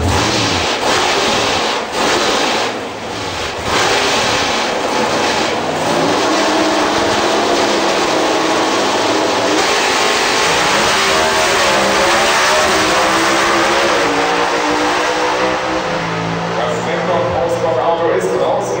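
Two Pro Stock drag cars' naturally aspirated V8 engines, held on the starting line and then launched down the strip. From about ten seconds in the pitch climbs and drops back again and again as the cars shift up through the gears.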